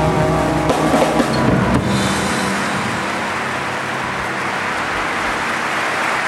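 A jazz quartet's closing chord on piano, bass and drums ringing and breaking off in the first second or two, then audience applause, steady clapping for the rest.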